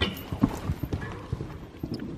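A horse's hoofbeats on soft dirt arena footing, a run of uneven thuds as it passes close by, fading as it moves away.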